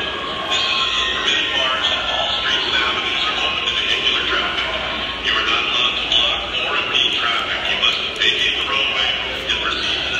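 A large crowd of protesters in the street, many voices shouting and talking at once, loud and continuous without a break.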